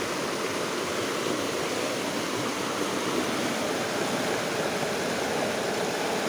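Steady rush of a fast-flowing, muddy creek swollen by rain, its water running hard over rocks.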